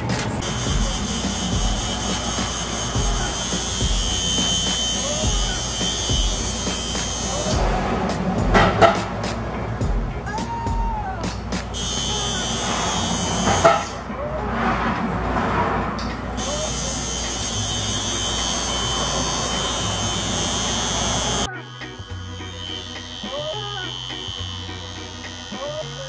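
Background music with a steady beat, mixed with the buzz of an electric tattoo machine that runs in stretches of several seconds and stops between them. Near the end the buzz stops and the music changes to a quieter passage.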